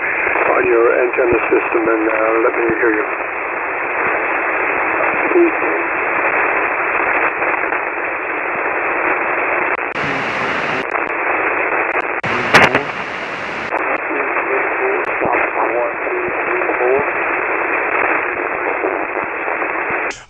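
Weak single-sideband voice signal from an amateur station on the 40-meter band, heard through a transceiver's receiver. The distant operator's voice lies barely above a steady band-noise hiss: the signal has dropped down into the receiving station's noise floor. Two brief bursts of wider hiss come about halfway through.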